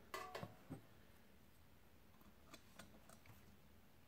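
Near silence broken by a few faint taps and clicks of hard objects being handled on a cloth-covered table: aluminium pedals shifted and a glass kitchen scale set down. A few soft knocks come at the start, then scattered single clicks past the middle.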